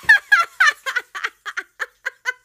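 A man's rapid, high-pitched cackling laugh: a string of short 'ha' bursts that slow down and grow fainter.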